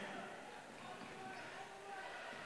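Faint gymnasium ambience: scattered distant voices from the crowd and benches, with players' footsteps on the hardwood court.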